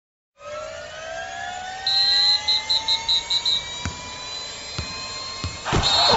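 Intro sound effect: a whine that rises steadily in pitch, with a fast beeping high tone for a second or two in the middle and a few sharp ticks, ending in a hit as theme music starts near the end.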